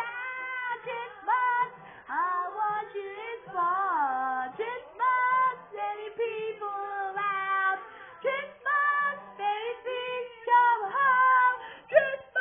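Women singing a song with light musical backing, played from a television.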